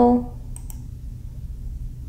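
Two quick computer mouse clicks about half a second in, close together, over a low steady hum.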